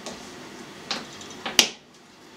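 Kitchen knife cutting through a hard cheddar and striking a cutting board: three sharp clicks in the second half, the last and loudest near the end.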